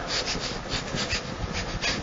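Irregular scratchy rustling and rubbing noise, a dense run of small scrapes.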